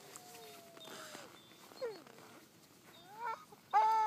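Huskies howling: a faint, long, slightly falling howl in the first second, a short falling whine around two seconds in, then rising calls that build to a loud howl near the end.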